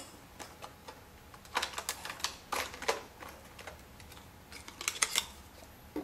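Scattered light clicks and clatter of plastic and metal parts being handled as a laptop's hard-drive bay cover comes off and the 2.5-inch hard drive in its metal caddy is slid out and set down, in two clusters.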